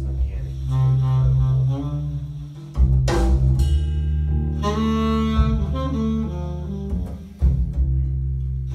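Recorded jazz played back through B&W Nautilus loudspeakers at a loud level: a deep, sustained bass line under a pitched melody. Sharp hits come about three seconds in and again near the end.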